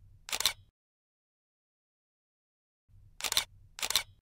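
Camera shutter sound effect: a pair of sharp clicks about half a second apart at the start, and the same pair again about three seconds in, with dead silence between.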